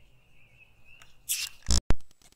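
Handling noise: a short rustle about a second and a half in, then two sharp clicks near the end, over a faint steady high-pitched whine.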